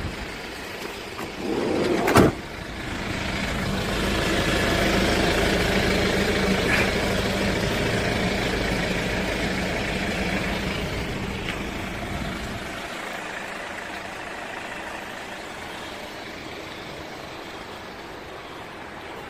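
A door on a Hyundai Grand Starex van slams shut with one loud bang about two seconds in. Then the van's engine idles steadily, loudest while heard up close beneath the van and fading toward the end.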